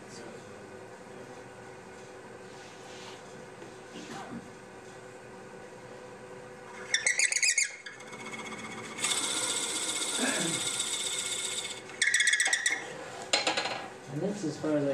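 Wood lathe running with a low steady hum while a five-eighths Forstner bit in a drill chuck bores into the spinning wooden shaker blank. The bit chatters in short, loud squealing bursts about halfway through and twice near the end, with a longer steady hissing cut between them as it is fed deeper.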